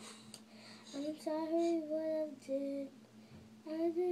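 A young girl singing her own improvised song unaccompanied, in long held notes that slide up and down in pitch. The singing starts about a second in, breaks off briefly and comes back near the end.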